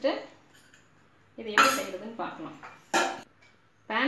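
Metal clanking of a frying pan against a gas stove's burner grate as it is set down and shifted: a loud clatter about one and a half seconds in, then a single sharp clink near three seconds.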